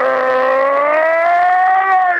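A radio football commentator's goal cry: one long held shout of the scorer's name that rises slowly in pitch.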